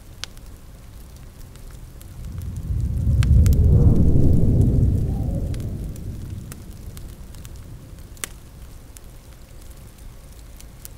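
A low rolling rumble of thunder swells about two seconds in and fades away over several seconds. Under it runs a steady hiss of rain, with a few sharp crackles from a wood fire.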